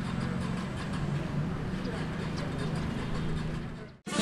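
Outdoor ambient sound: a steady low rumble with faint voices in the background, fading out just before the end.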